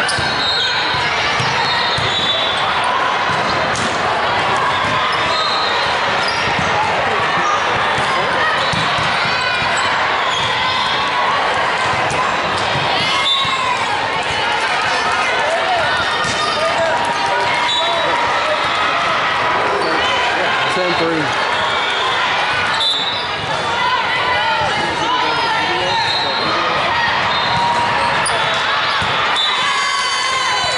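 Busy volleyball hall din in a large echoing gym: many overlapping voices and calls, with volleyballs being struck and bouncing on the hardwood floor and a sharp knock about 13 seconds in.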